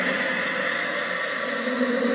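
A steady rushing noise with a low hum running under it, the sound bed of an animated logo intro.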